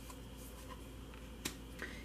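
A tarot card being laid down onto a spread of cards on a wooden table: faint card rustling, then a sharp tap about a second and a half in and a smaller one just after.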